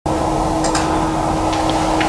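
Steady office room noise with a constant hum, and a few light clicks from typing on a laptop keyboard.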